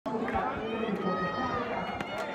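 Several people's excited voices, shouting and talking over one another, over the murmur of a crowd.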